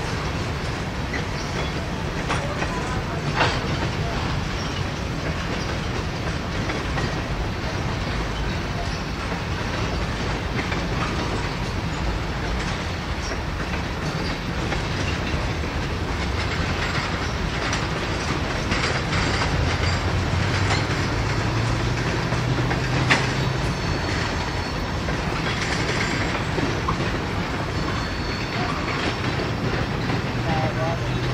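Freight train tank cars rolling past at speed: a steady rolling rumble with wheels clacking over the rails. There are a couple of sharp clicks, one a few seconds in and one about two-thirds of the way through.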